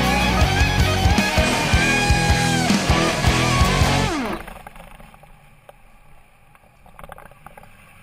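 Rock music with guitar and a heavy beat plays loudly, then ends about four seconds in with a falling pitch slide. A faint low background sound remains after it.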